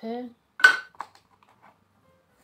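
A single sharp clink of a hard object, with a short bright ring, about half a second in, followed by a lighter click and a few faint taps.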